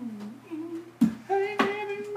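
A man humming a held, wavering tune, with a slap of his hand on a wooden counter top about a second in and again about half a second later, keeping a steady beat.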